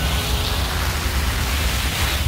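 A woven mat loaded with cut leafy branches being dragged over grass, giving a steady scraping, rustling hiss.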